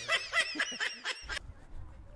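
A man laughing in short, repeated laughs, cut off abruptly about a second and a half in. Faint steady outdoor background noise follows.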